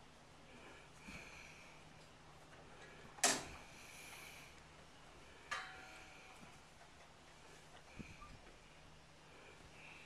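Texas Longhorn cow blowing out a loud snort about three seconds in, followed about two seconds later by a shorter sharp knock with a brief ringing tone.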